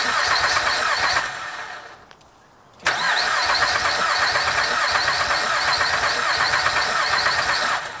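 2006 Honda Pilot's 3.5-litre V6 being cranked by its starter in two goes, a short pause about two seconds in; it turns over but does not fire. The no-start is put down to the immobilizer refusing an aftermarket key, its light flashing on the dash.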